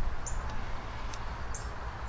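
Outdoor background: a steady low rumble with a few brief, very high chirps from a small bird, and a soft handling click at the start as a gloved finger works putty against the cast iron hopper.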